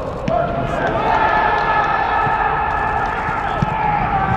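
Several voices shouting in long, drawn-out cries as a penalty is saved and scrambled, with a few sharp thuds of a football being kicked, one near the end.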